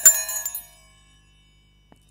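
A small heart-shaped bell ornament rings: a light strike right at the start, then a clear, several-toned chime that fades away over about a second and a half. It is used as a calming mantra sound for meditation.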